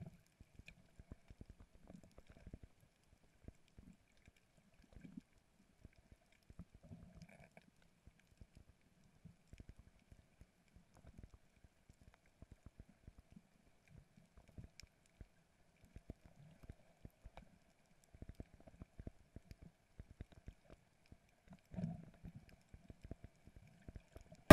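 Near silence from a camera under water: only faint, muffled knocks here and there, slightly louder about five, seven and twenty-two seconds in, over a faint steady hum.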